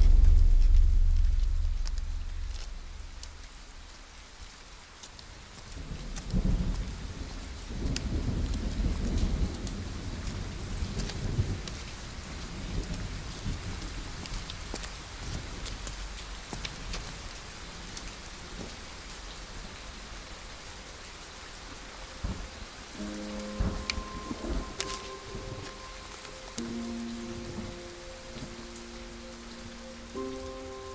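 Steady rain with rolls of thunder: a loud low rumble that fades over the first few seconds, and another about six seconds in. Soft music with held notes comes in near the end.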